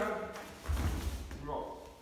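A body thudding onto a padded martial-arts floor mat in a takedown, about a second in, with rustling of heavy cotton karate uniforms around it.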